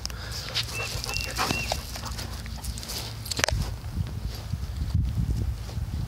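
Dog whining: three short high whines about a second in, over a low rumble of wind and handling on the microphone, with a few rustles.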